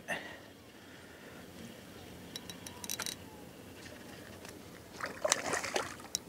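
A hooked King George whiting splashing at the surface as it is swung out of the water, about five seconds in. A few faint clicks come earlier, over a quiet background of calm water.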